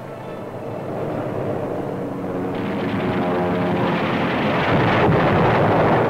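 Aircraft piston engines droning, as a newsreel sound track for warplanes in flight, growing steadily louder over several seconds and loudest near the end, like planes closing in on an attack run.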